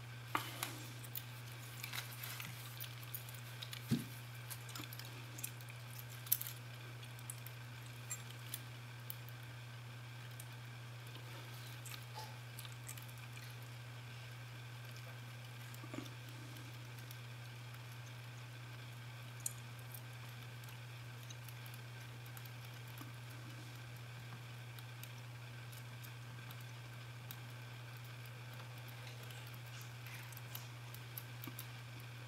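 Faint metallic clicks and scrapes of a Bogota-style rake pick and tension wrench working the pins of a TESA euro-profile pin-tumbler cylinder. The clicks come in a cluster over the first several seconds and only now and then after that, over a steady low hum.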